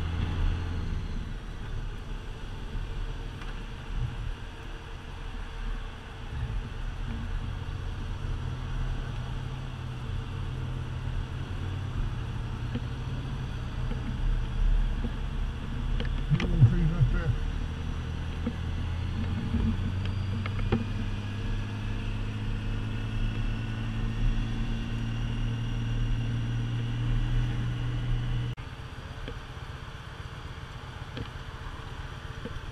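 Honda Gold Wing touring motorcycle engine running on the move, with wind noise, its pitch shifting with speed. Near the end the engine sound drops off suddenly as the bike slows to a stop.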